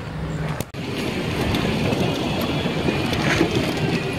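Steady rushing outdoor noise of a car park, with no distinct events, starting after a brief dip about two-thirds of a second in.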